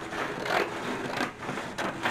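A printed paper pattern sheet being handled on a cutting mat: paper rustling with a few soft taps.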